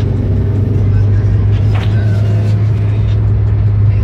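Steady low rumble of engine and road noise heard inside a moving car's cabin.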